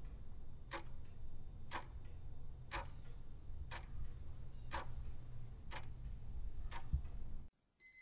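Clock ticking sound effect, one tick a second over a low steady hum. The ticking stops about seven and a half seconds in, and a short electronic alarm-clock beep begins at the very end.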